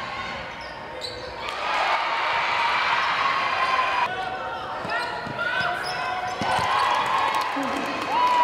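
Live basketball game sound in a gym: the ball bouncing on the hardwood, sneakers squeaking, and spectators' voices shouting and calling out over the hall noise.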